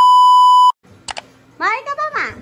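The steady, high-pitched test-tone beep that goes with television colour bars, used here as an edited-in transition effect. It holds one pitch for under a second and cuts off suddenly.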